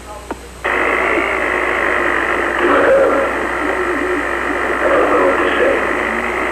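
A man speaking on a poor-quality audiotape recording, his voice buried in a thick, thin-sounding hiss that cuts in suddenly about half a second in.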